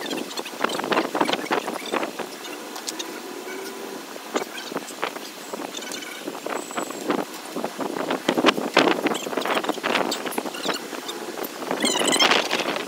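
Irregular knocks and clatter over steady outdoor background noise, as from dumbbells and push-up blocks being handled and set down.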